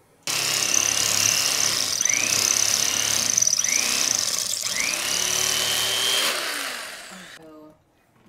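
Electric carving knife running as it cuts through mattress foam: it switches on suddenly with a steady high whine, its pitch dips and climbs back three times in the middle, then it winds down and stops.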